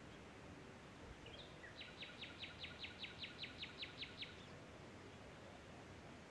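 A bird sings one faint phrase over steady background hiss. A short opening note is followed by a fast, even series of about a dozen identical sharp notes, about five a second.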